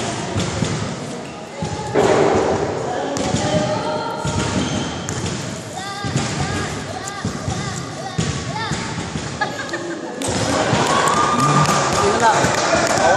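People talking, their voices echoing in a gymnasium, with a basketball bouncing on the hardwood court.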